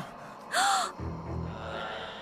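A short, sharp gasp about half a second in, over quiet background music.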